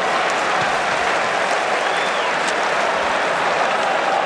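Large football stadium crowd, a steady, dense wash of crowd noise with clapping.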